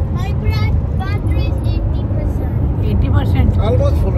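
Steady low road and engine rumble inside a moving car's cabin, with voices over it.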